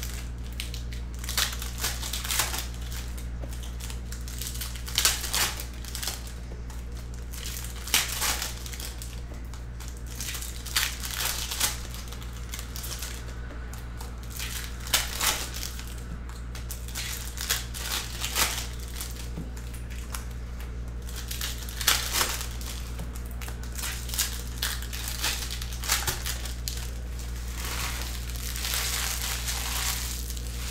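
Foil Topps Chrome trading-card pack wrappers crinkling and tearing open in irregular bursts as the packs are opened and the cards handled, over a steady low hum.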